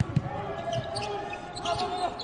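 A basketball being dribbled on a hardwood court, a few dull thuds of the ball hitting the floor in the first second.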